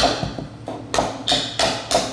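Cookie dough being stirred by hand, the utensils knocking against the ceramic mixing bowls about three times a second after a quieter first second.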